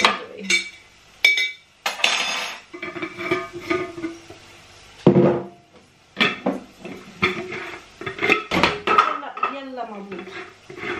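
Glass spice jars and their metal screw lids clinking and knocking as they are handled, closed and set down on the worktop, in a run of irregular sharp clicks.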